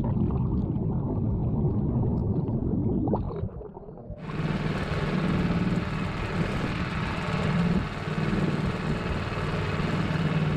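A Tohatsu 5 hp four-stroke outboard motor drives the boat steadily under way. For the first few seconds it is heard underwater as a muffled churning of the propeller. About four seconds in, after a brief dip, the sound switches to above the water: a steady engine hum with the rush of water.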